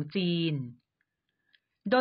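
Thai voiceover narration: a phrase ends, a pause of about a second of dead silence follows with a faint tick, and the voice starts again just before the end.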